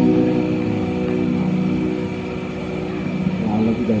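A live band's last held chord ringing out and slowly fading. A voice starts speaking near the end.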